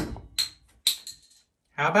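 Glass bottle of hard cider being opened: a sharp crack as the crown cap comes off, followed by two lighter clicks about half a second apart.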